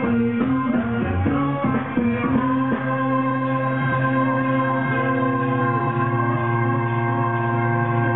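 Live band music, heard from the crowd. The busy melodic playing of the first few seconds gives way to a long sustained chord that holds to the end.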